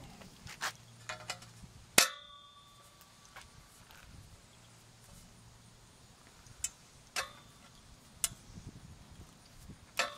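Galvanized steel dome cap being fitted onto a steel fence-post top: one sharp metallic clang about two seconds in that rings on briefly, with a few lighter metal clicks and taps before and after.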